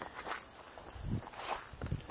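A steady high insect chorus from the surrounding weeds, with a few soft footsteps through grass and brush, about a second in and near the end.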